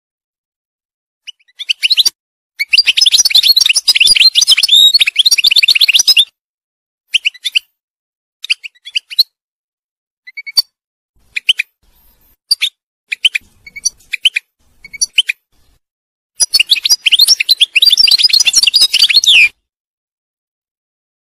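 European goldfinch singing: a long run of rapid, high twittering notes lasting about five seconds, a stretch of short scattered calls, then another dense run of about three seconds near the end.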